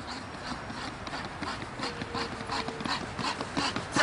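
Running footsteps of two men bounding up stone stairs: a quick, even patter of shoe strikes on the steps, growing louder as they come closer.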